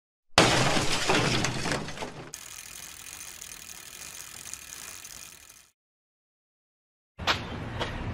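A glass-shattering sound effect for an animated logo intro: a sudden crash that fades over about two seconds into a softer shimmering tail, which cuts off suddenly. After a gap of silence, faint outdoor background comes in near the end.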